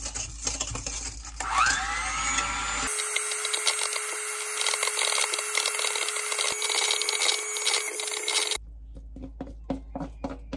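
Electric hand mixer whipping cream in a stainless steel bowl. Its motor whines up in pitch about a second and a half in, then runs steadily with the beaters rattling and scraping against the metal bowl. It stops abruptly shortly before the end.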